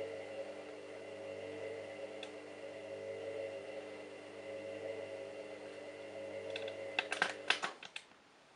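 Candy Smart Touch washing machine humming steadily during its load-weighing and soaking phase. Near the end there is a quick cluster of clicks, and the hum cuts off.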